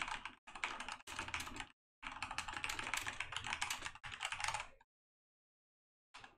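Typing on a computer keyboard: quick runs of keystrokes in four bursts with short pauses, the longest run in the middle, stopping about five seconds in.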